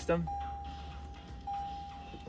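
Toyota Land Cruiser 200-series dashboard warning chime: a steady electronic tone held for about a second, then sounding again and held, as the ignition is switched to accessory mode.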